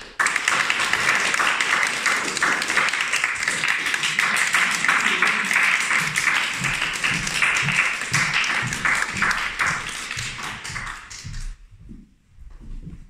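Audience applauding after a piano piece, a dense steady clapping that begins just after the music stops and fades out near the end.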